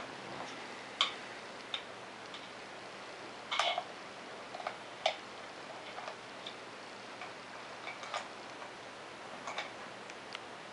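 A spoon knocking and stirring in a small plastic bowl as a toddler plays: light, irregular clicks about a second apart, with a louder clatter about three and a half seconds in.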